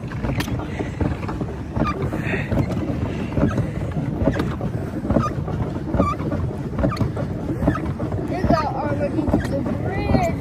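Pedal boat under way: its paddle wheel churning water as it is pedalled, with wind on the microphone.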